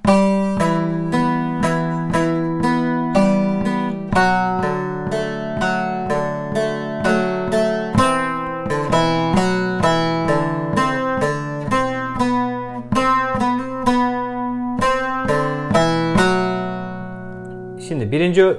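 Bağlama, a Turkish long-necked lute, played with a plectrum: a quick melodic passage of plucked single notes, several a second, over open strings ringing underneath, outlining D minor figures (F, D, A). Near the end the last note is left to ring out and fade.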